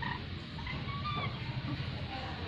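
Lories giving soft, short chirps and whistled notes, several in quick succession, over a steady low hum.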